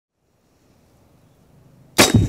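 Near silence with a faint outdoor background, then right at the very end the sudden sharp report of an AirForce Texan .45-calibre big-bore air rifle firing on its 3,000 PSI air charge.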